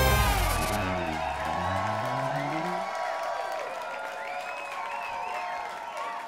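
Show theme music ending on a loud final hit that rings and fades over the first couple of seconds, with a crowd cheering and whooping as the music dies away.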